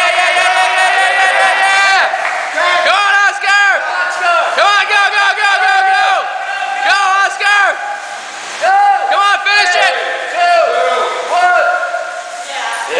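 Men yelling short, rapid shouts of encouragement in quick runs, after a long held yell at the start, over the whirring fan of a Schwinn AirDyne air bike pedalled flat out.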